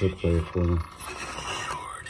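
A radio playing in the room: an announcer's voice reading an advertisement.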